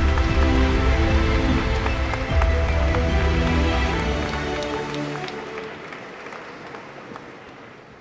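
Closing music with held notes over a heavy bass, fading out gradually through the second half.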